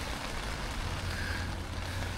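Heavy rain falling steadily on the hot tent's fabric, heard from inside the tent as an even hiss.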